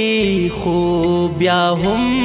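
Background music: a solo voice sings a slow melody in long held notes that glide slowly down and back up, over a low steady drone.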